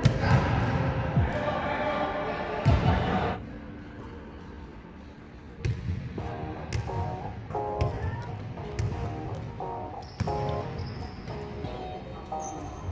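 Basketball bouncing on an indoor court floor, with a run of sharp thuds from about halfway on, among players' voices and music.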